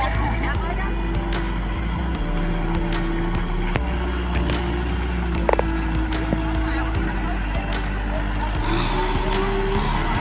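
Kubota farm tractor's diesel engine running steadily with a wavering engine tone, and a short sharp sound about five and a half seconds in.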